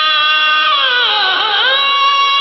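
A singer's long sustained sung note with harmonium accompaniment; about halfway through, the voice swoops down in pitch and climbs back before holding steady again.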